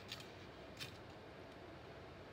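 Clear adhesive tape being pulled and torn off a desktop tape dispenser: two brief, faint rasps, the second about a second after the first.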